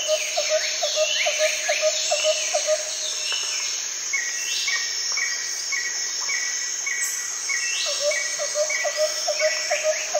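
Birds calling and chirping. A rapid run of low chirps, about four a second, fades out about three seconds in and comes back near the end. In between, a higher note repeats evenly, along with other short gliding calls over a steady high hiss.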